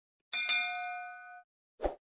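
Notification-bell sound effect: a single bright ding about a third of a second in, ringing out for about a second, then a short low pop near the end.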